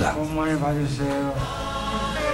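A choir singing a hymn-like piece with music, the voices holding notes that change in steps.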